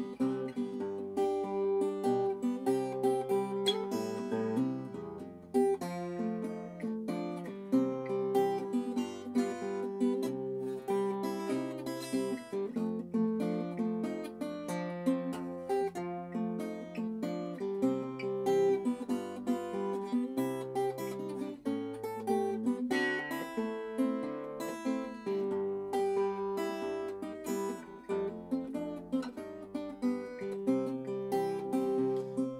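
Solo acoustic guitar fingerpicking a ragtime blues instrumental passage, with bass notes moving steadily under a picked melody.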